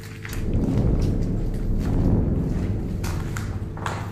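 A deep rumble that swells up about half a second in and fades away over the next few seconds, over a steady low hum.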